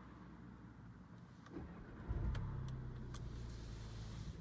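Audi S3 saloon's turbocharged four-cylinder engine starting, heard from inside the cabin: a short crank about a second and a half in, then the engine catches with a loud burst at about two seconds and settles into a steady low idle. A few light clicks come around the start.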